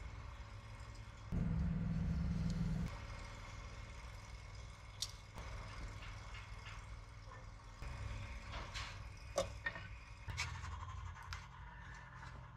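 Light scraping and clicking of hands and a scribe working on a stainless steel wear ring inside a jet-pump intake housing, a few scattered taps in the second half. Under it runs a steady low hum, which swells louder for about a second and a half near the start.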